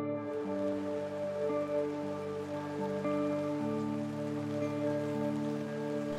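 Steady rain falling, its hiss coming in just after the start, over soft ambient background music with slow held chords.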